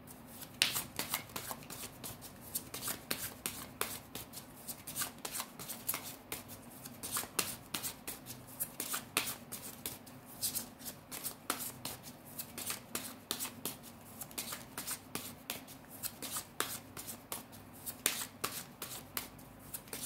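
A deck of tarot cards being shuffled by hand: a continuous run of quick, irregular card-on-card flicks and slaps, several a second, that does not let up.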